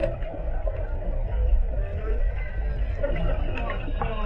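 Steady low rumble of water moving around an underwater camera, with muffled speech over it; the words "don't know" come just after the start.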